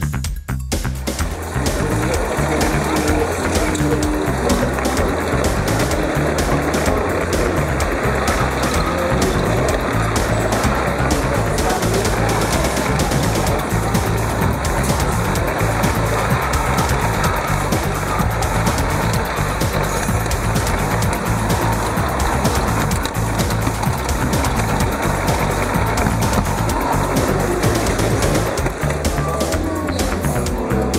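Music over a steady mechanical rumble and clatter of a garden-scale model train running along its track close to the microphone.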